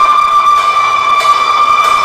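A single long, high held note from a street band's melody instrument, steady and creeping slightly upward in pitch, with the band's drums faint beneath it.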